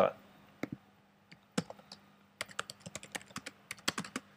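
Typing on a computer keyboard: a few scattered keystrokes at first, then a quick run of keystrokes in the second half.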